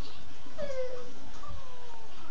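A toddler's high-pitched, wordless vocalizing: two drawn-out calls that fall in pitch, the second longer, with a soft thump between them.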